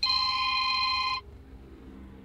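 Mobile phone ringing with an incoming call: one electronic ring of several high tones sounding together, lasting just over a second before it cuts off suddenly.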